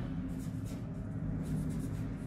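Pen writing on paper: a run of short, faint scratching strokes as a word is written out.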